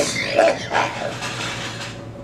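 A person's non-speech vocal sound: a sudden breathy burst that trails off over about two seconds.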